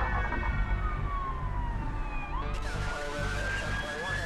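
Police siren sound effect that slides slowly down in pitch, then turns and rises again about two and a half seconds in, over music with a pulsing low beat: the opening sting of a TV police-news segment.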